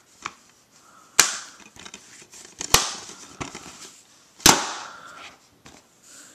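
Plastic DVD case being handled: three sharp plastic clacks about a second and a half apart, the last the loudest, with softer clicks between.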